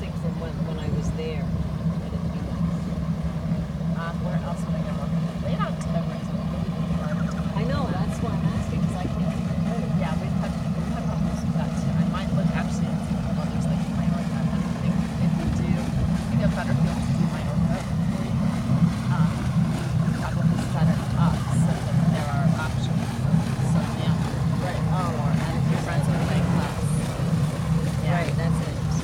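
A boat's engine running at low speed as a steady low hum, pulsing more noticeably and getting a little louder in the second half as the boat manoeuvres in close to the shore.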